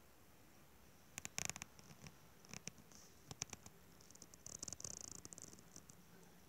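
Faint clicks and rustles of a phone being handled and moved while it films, with a cluster of clicks about a second in and a longer rustle near the end.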